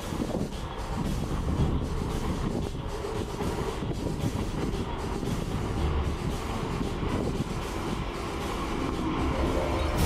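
Kintetsu electric train running toward the platform, a steady rumble of wheels on the rails that grows a little louder near the end.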